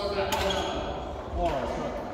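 Two sharp knocks about a second apart, ringing in an echoing sports hall, with men's voices between them.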